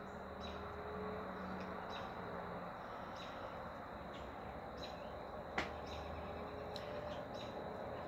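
Quiet outdoor background with short, faint, high chirps repeating about every half second, over a low steady hum, and one sharp click a little past halfway.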